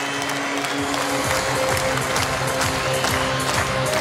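Goal music in an ice hockey arena playing over crowd cheering and applause, celebrating a goal just scored.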